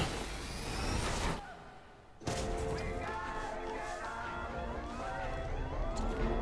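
Movie trailer soundtrack: a dense rush of sound effects for about the first second and a half, a brief drop to near quiet, then dramatic music of held notes with repeated rising sweeps.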